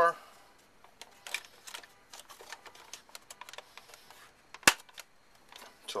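Plastic belt-access trap door on a Rainbow E-Series power nozzle being fitted and pressed shut. Light plastic clicks and taps come first, then one sharp snap about three-quarters of the way through as the door latches.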